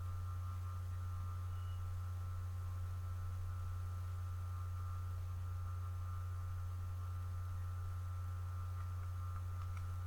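Steady low electrical hum, with fainter high-pitched tones held above it.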